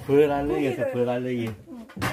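A person's voice speaking a short phrase in a low, drawn-out way, followed by quieter sounds.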